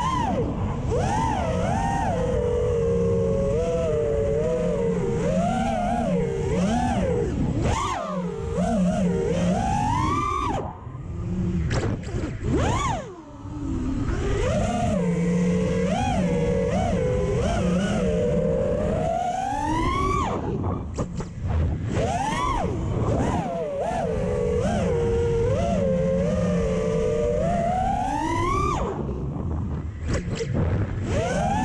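FPV quadcopter's four iFlight XING 2207 2450kV brushless motors whining, the pitch rising and falling constantly with throttle, with wind noise, heard from the onboard camera. The motors briefly go quiet twice, about eleven and thirteen seconds in, then climb back up.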